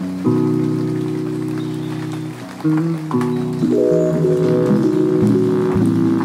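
Opening of a lofi track: sustained chords with no beat, changing about two and a half seconds in and again a second later, over a faint rain-like crackle.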